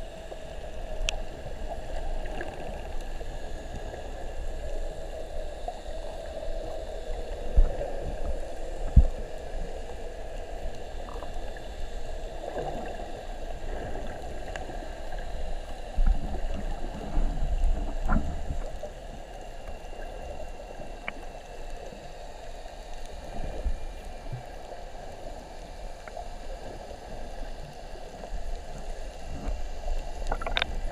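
Muffled underwater water noise picked up by a camera held below the surface, a steady rush with a few low thumps and knocks, two sharp ones about seven and nine seconds in and a rumbling stretch a little past halfway.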